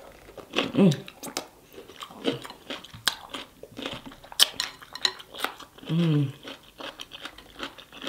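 A person chewing deshelled king crab meat coated in seafood-boil sauce, with wet mouth smacks and many short scattered clicks, and fingers squishing in the sauce.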